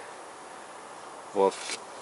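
Steady faint background hiss, broken by one short spoken word about one and a half seconds in.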